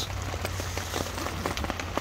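Rain falling on a tent's fabric, heard from inside the tent: many small, irregular ticks of drops over a steady hiss.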